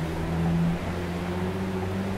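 A steady low mechanical hum, its pitch shifting slightly just under a second in.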